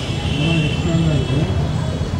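A man speaking, untranscribed, over steady street traffic noise.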